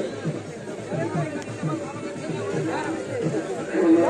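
Several men's voices talking and calling over one another on an open cricket field, with music underneath.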